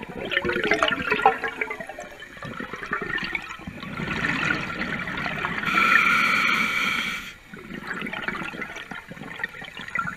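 Scuba regulator breathing underwater: a gurgling rush of exhaled bubbles, then a hissing inhale through the regulator about six seconds in, followed by bubbles again.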